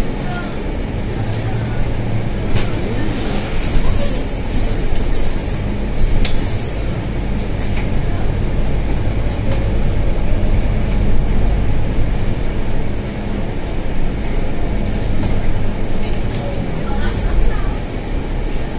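Scania N320 city bus's diesel engine running steadily while the bus drives along, heard inside the cabin as a steady low drone, with occasional sharp clicks from inside the bus.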